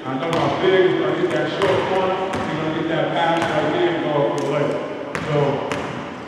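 A basketball bouncing several separate times on a gym's hardwood floor, as sharp single thuds, under a man talking.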